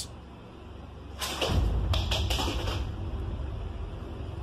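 A burst of clattering and scuffling in a kitchen, several knocks over about a second and a half beginning about a second in, with a low rumble under it.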